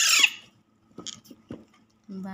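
A young Alexandrine parakeet chick gives one loud, shrill squawk that falls steeply in pitch, a begging call at hand-feeding. About a second later there are a brief faint squeak and a few soft clicks.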